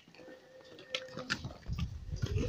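Footsteps and scattered knocks on a stone stairway, with a steady held tone for about a second near the start and a low rumble of wind or handling on the microphone near the end.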